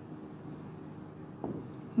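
Pen writing on a board, heard faintly as soft strokes, with a few light taps about one and a half seconds in.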